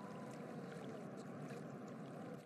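Faint, steady background ambience: an even rushing hiss with no distinct events.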